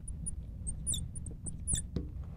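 Felt-tip marker squeaking on a glass lightboard while handwriting: a run of short, high-pitched squeaks, several a second, with a few faint taps of the tip.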